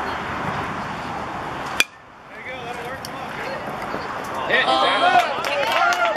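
A baseball bat hitting a pitched ball once, sharply, about two seconds in, followed a couple of seconds later by spectators shouting and cheering.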